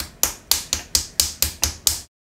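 Rapid skin-on-skin slaps, a hand repeatedly smacked against a face, about four a second, cutting off abruptly near the end.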